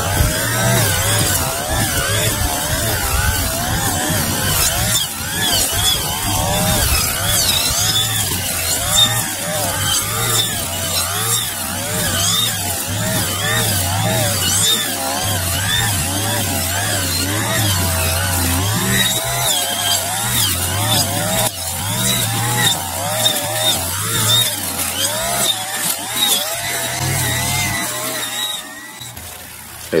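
Gas-powered string trimmer running at high speed while cutting tall grass, its engine pitch wavering up and down with each sweep. The sound drops away about two seconds before the end.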